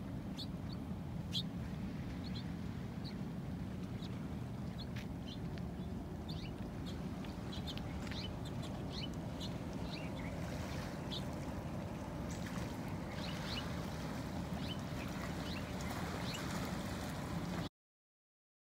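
Small birds giving short, scattered high chirps over a steady low rumble of outdoor ambience.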